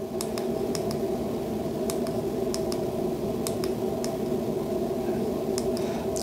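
Steady low background hum with about a dozen faint, irregularly spaced small clicks, as fingers handle a small handheld USB-C tester.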